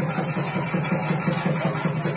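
Loud, steady traditional festival music with dense, rapid drumming, played for costumed devotees dancing.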